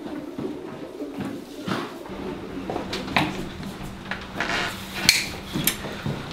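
Scattered light knocks and clatter, like objects being handled, over a steady low hum that starts about two seconds in.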